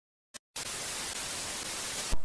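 Steady static hiss like an untuned TV, used as a glitch-style intro sound effect, starting about half a second in after a brief click.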